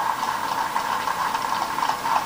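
A crowd applauding, an even patter of many hands clapping.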